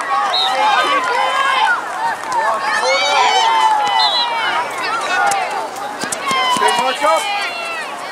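Several voices shouting and calling over one another at a youth soccer game: spectators and players yelling across the field.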